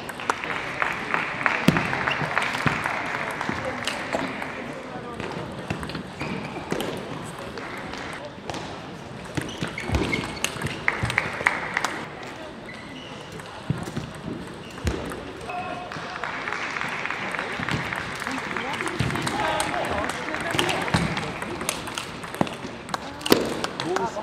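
Table tennis ball clicking off rubber-covered bats and bouncing on the table in rallies, quick sharp ticks one after another. A steady wash of hall noise fills the first few seconds and again the second half.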